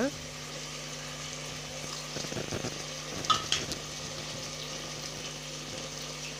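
Onions, chillies and chopped tomatoes sizzling steadily in oil in an aluminium pressure cooker, with two short clicks a little after halfway through.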